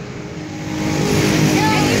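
A motor vehicle engine running with a steady low hum, with a child's voice coming in near the end.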